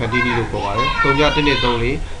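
Speech: a person talking, with a low steady hum underneath.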